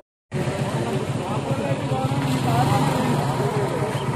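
A motorcycle engine running steadily at low revs, with people talking over it.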